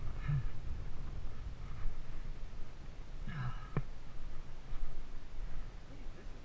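A steady low rumble of wind on the microphone while climbers scramble over rock, with a short vocal sound from a climber about three seconds in, followed at once by a single sharp click.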